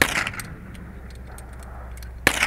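Metallic clack of an SKS rifle's bolt being worked by hand, loudest at the very start, followed by a few lighter clicks. The action is being cycled to clear a feeding problem with a Chinese 75-round drum magazine.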